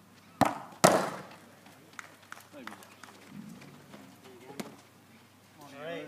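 A football kicked hard about half a second in, followed almost at once by a second, louder bang with a short ring as the ball strikes something hard. A few lighter knocks and faint voices follow, with voices rising near the end.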